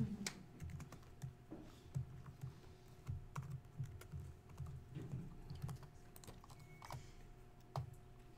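Typing on a computer keyboard: an irregular run of keystrokes, heard mostly as soft low thuds with a few sharper clicks.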